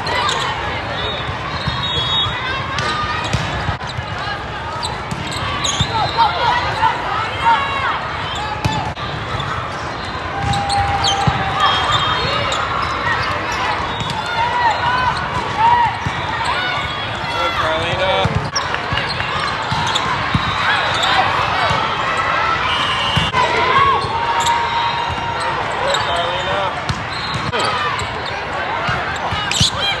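Busy indoor volleyball tournament hall: a steady din of many voices from players and spectators, with repeated thuds of volleyballs being hit and short high squeaks of sneakers on the court.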